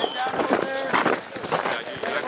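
Men's voices talking and calling out indistinctly, several short utterances through the two seconds.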